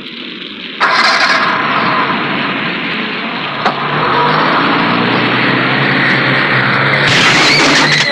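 Heavy rain pouring down with a car engine starting about a second in and running as the car drives off through the downpour; a single short knock comes partway through.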